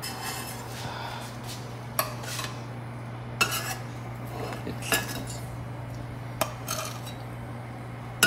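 Metal spatula scraping and clinking in a stainless steel frying pan as the toasted pizza pandesal are lifted out, with four sharp clinks spaced about a second and a half apart. A steady low hum runs underneath.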